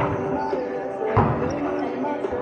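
A volleyball struck once, a sharp smack about a second in, during a rally in the hall.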